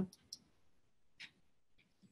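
A few faint computer mouse clicks while navigating the software.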